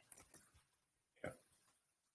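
Faint computer keyboard typing: a few quick key clicks in the first half-second, then near silence.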